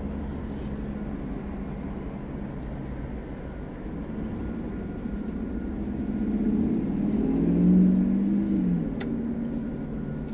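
A car going by on the street outside, heard through open car windows: its engine note swells and rises in pitch, peaks about eight seconds in, then falls and fades, over a steady low rumble.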